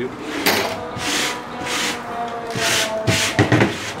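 A hand sweeping metal drill shavings across a tabletop in a series of short swishes, with a few knocks near the end as the metal chassis is handled on the table.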